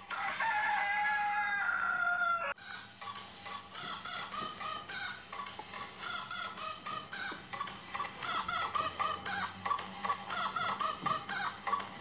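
A long crowing call, like a rooster's, falling in pitch and cut off suddenly about two and a half seconds in, followed by a run of short, quick repeated calls like clucking, with music faintly underneath.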